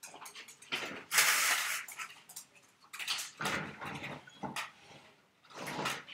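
A pet dog being let out through the back door: several short noisy bursts, the loudest about a second in.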